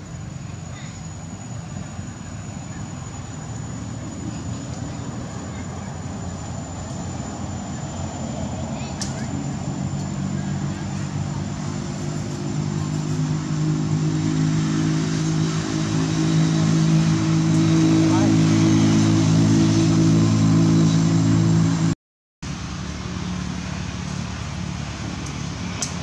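A motor vehicle's engine hum, steady in pitch, grows louder over about twenty seconds. Near the end the sound drops out for a moment, then the hum goes on more quietly.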